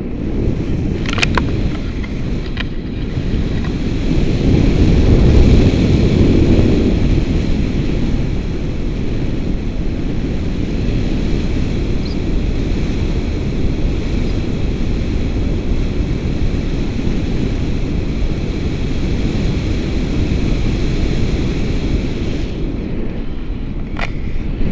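Wind buffeting the camera's microphone in flight under a tandem paraglider: a steady, heavy low rumble that swells loudest about five seconds in, then settles.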